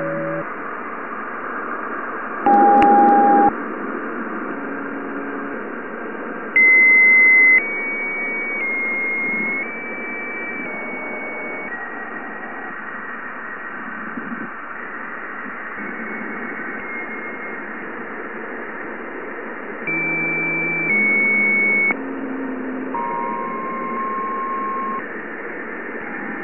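Plasma wave signals from Jupiter's ionosphere, recorded by the Juno spacecraft's Waves instrument and slowed about 60 times into the hearing range: a steady radio-like hiss with momentary, nearly pure tones that jump from one pitch to another, each held for about a second. The loudest come about three and seven seconds in. The tones step along a scale set by the electron density and are likely caused by the spacecraft interacting with the charged particles around it.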